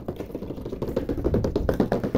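Fingers tapping quickly on the plastic and cardboard packaging of a toy box, a dense run of small clicks and taps.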